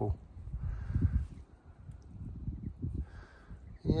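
Outdoor field background: low, irregular rumble on the microphone with two faint harsh bird calls, about a second in and again near the end.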